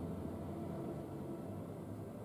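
Steady low hum and hiss of room noise; the hands holding still pressure on the back make no distinct sound.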